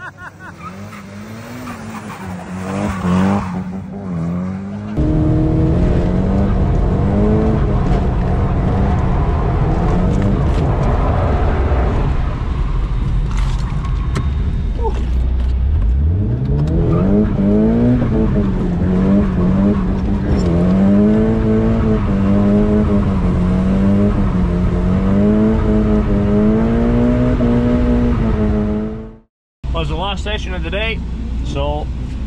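Nissan Silvia S15 drift car's engine heard from inside the cabin, the revs rising and falling over and over as it is drifted; about halfway the revs drop very low and climb steadily back up.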